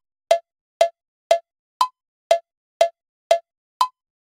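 Melda MMetronome software metronome clicking a short pitched tone at 120 bpm, two beats a second. Every fourth beat, the first of each 4/4 bar, is higher pitched than the other three.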